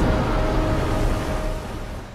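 Avalanche rumble from a film soundtrack: a loud, dense, deep rush of noise with faint sustained music tones underneath, easing off over the last half second.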